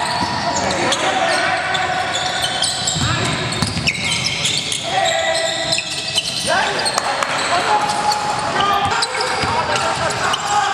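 Live court sound of a basketball game in a large indoor gym: sneakers squeaking on the hardwood floor, the ball bouncing, and players calling out to each other.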